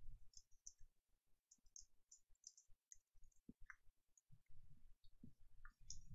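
Faint, irregular clicking of a computer mouse and keyboard keys.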